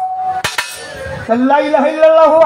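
A man's singing voice enters about 1.3 seconds in, on held notes that bend up and down, after a steady held note and a single sharp click about half a second in.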